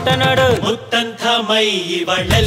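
Kannada film song: a sung vocal line with bending pitch over sparse backing. The heavy low beat is absent here and returns just after.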